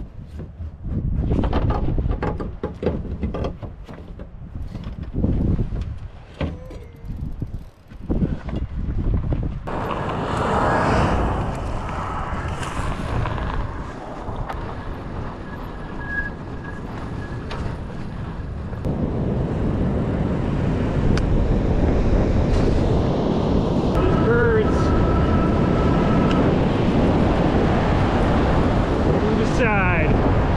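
Knocks and clatter as a fat-tyre e-bike is handled down off a pickup truck bed, then a steady rush of wind on the microphone and tyre noise as the e-bike is ridden over a sandy dirt track.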